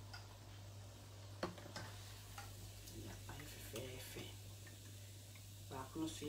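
Light, irregular clicks and taps of kitchen utensils and dishes being handled, over a steady low electrical hum.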